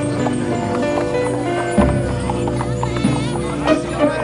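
Background music with the clip-clop of a pack animal's hooves walking on a dirt street.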